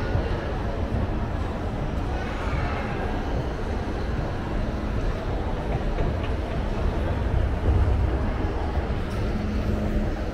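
Moving escalator running with a steady low mechanical rumble, heard while riding it, in an indoor mall's background noise.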